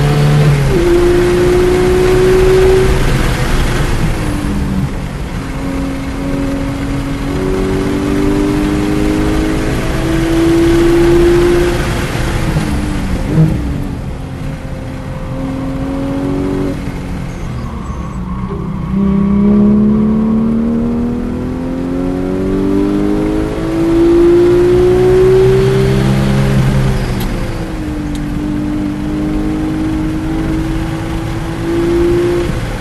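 Porsche 911 GT3's naturally aspirated flat-six heard from inside the cabin under hard track driving: its pitch climbs under full throttle, then drops away under braking, several times over. There is one brief sharp knock about thirteen seconds in.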